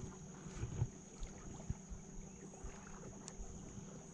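Faint small ticks and light knocks from a spinning reel being cranked and a rod being worked from a jon boat, over a steady low hum and a thin high whine.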